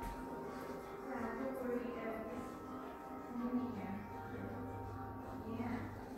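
Indistinct voices mixed with background music.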